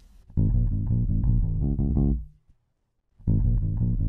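Passive electric bass guitar recorded direct into a Warm Audio WA273-EQ preamp, its tone shaped with the unit's gain and EQ and light compression, playing a short riff. The phrase stops about two seconds in and starts again a second later as the clip loops.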